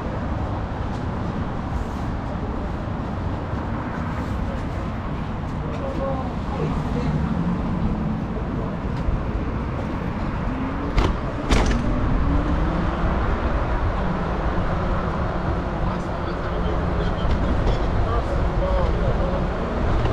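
City street ambience: a steady low rumble of traffic with faint voices, and a couple of sharp clacks about eleven seconds in.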